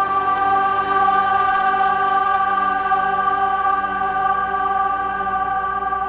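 Background choral music: voices holding one sustained chord, easing off slightly near the end.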